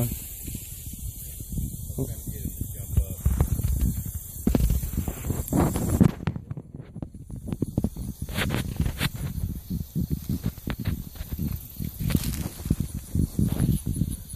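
Irregular rustling and crackling in grass and dry fallen leaves, with a low rumble of wind or handling on a phone microphone.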